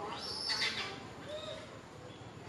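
A baby macaque's high-pitched squealing cry: one call that arches up and falls in pitch over about half a second near the start, then a fainter, shorter call.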